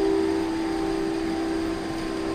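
A steady instrumental drone of a few held tones at once, running evenly without change.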